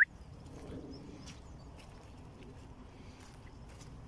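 A brief, sharp, rising squeak right at the start, then faint footsteps and rustling on wet grass.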